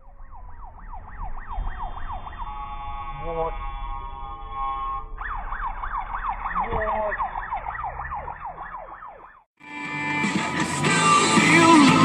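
Ambulance siren on its fast yelp, a rapid run of falling sweeps several times a second. For a couple of seconds in the middle it changes to a steady held tone, then the yelp resumes. It cuts off suddenly near the end, and music starts.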